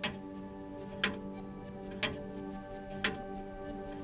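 A clock ticking once a second over a steady, held music drone.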